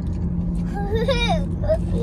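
Steady low rumble of a car's cabin on the move, with engine and road noise running underneath throughout.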